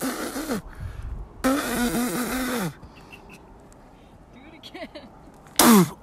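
A man's disgusted non-word vocal noises after tasting salt from a rock. There is a short grunt at the start, then a longer raspy, noisy vocal sound about a second and a half in, and a sharp exclamation falling in pitch near the end.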